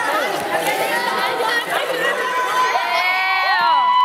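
A crowd of children chattering in a hall. From about three seconds in, several children give long, drawn-out cheering shouts.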